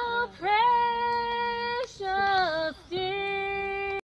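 A high woman's voice singing long held notes with vibrato, each sliding up into its pitch, with short breaks between them and nothing else heard. The singing cuts off abruptly at the end.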